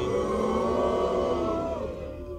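Audience giving a long collective sympathetic 'aww', many voices holding one vowel together and fading out near the end.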